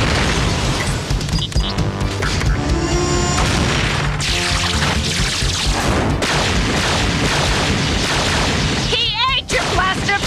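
Cartoon action soundtrack: dramatic music with repeated booms and blasts of a battle. A brief warbling electronic tone sounds near the end.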